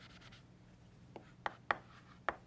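Chalk writing on a chalkboard: a faint scratch of chalk, then three sharp taps as the chalk strikes the board in the second half.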